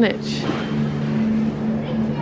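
Steady supermarket background hum: a continuous low mechanical drone with two steady low tones under an even hiss, as from the store's refrigerated display and ventilation machinery.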